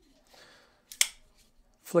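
Hogue K320 tanto folding knife flicked open, the blade snapping into its ABLE lock with one sharp click about a second in.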